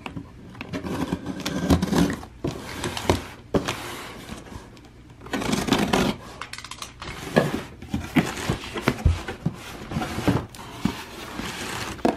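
A utility knife slicing through packing tape on a cardboard box, followed by the cardboard flaps being pulled open and rubbing, in a run of irregular scrapes, rustles and small clicks.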